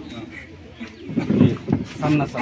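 People talking quietly, with a low murmuring voice loudest around the middle.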